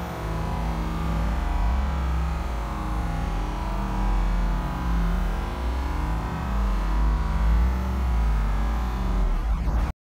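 Deep, steady rumble of a car driving slowly, heard from inside the cabin. It cuts off suddenly near the end.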